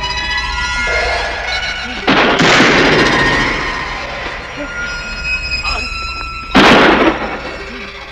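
Horror film soundtrack: sustained eerie music tones, broken by two sudden loud crashes, the first about two seconds in and fading over a second or so, the second shorter, near the end.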